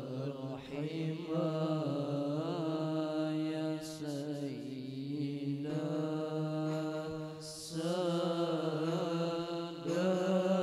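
A group of boys chanting an Arabic devotional qasidah in unison. The melody is slow, with wavering, ornamented turns held over a steady low note.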